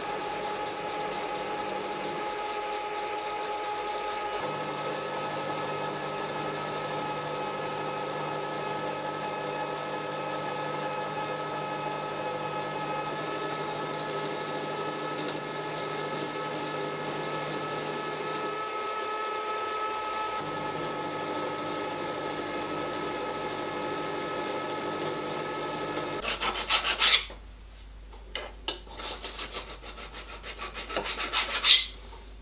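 Milling machine running, its end mill cutting the outside faces of a small metal part held in a vise: a steady machine hum with several whining tones under a rough cutting noise. About 26 seconds in, the machine stops, and a few clatters follow.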